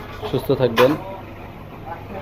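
A short burst of a person's voice about half a second in, over steady background traffic noise.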